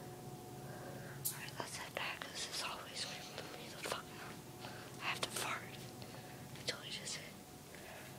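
A person whispering in short breathy bursts over a faint steady hum.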